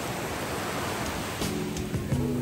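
Small waves breaking and washing up a sandy shore, a steady rushing. Background music with held tones comes in about one and a half seconds in.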